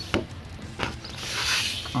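Glossy card sheets of an art portfolio sliding against each other as one is pulled out: a few light taps, then a papery sliding rustle from just past a second in to near the end.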